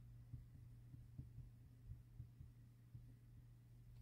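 Near silence: a steady low hum, with faint soft taps of a marker writing characters on a whiteboard, about a dozen over the few seconds.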